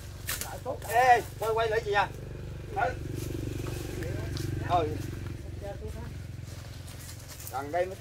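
Short bursts of men's voices calling out, over a steady low hum of a small engine running in the background that fades off near the end.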